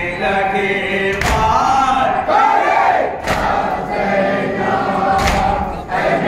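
A group of men chanting a noha (Muharram lament) in unison, with a sharp chest-beat (matam) struck about every two seconds in time with the chant.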